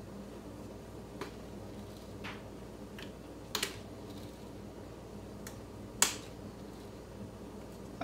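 Measuring spoon clicking against a jar and a plastic food processor bowl as powdered peanut butter is scooped and shaken in: about half a dozen light, scattered clicks, the loudest about six seconds in.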